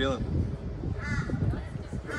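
A crow cawing, two calls about a second apart, over background voices.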